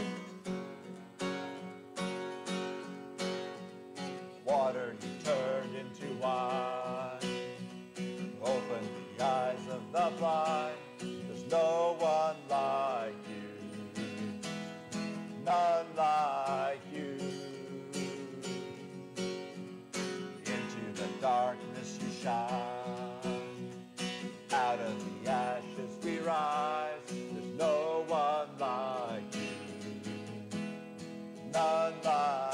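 Acoustic guitar strummed steadily, alone for the first few seconds, then joined by a man's voice singing a worship song in phrases over the chords.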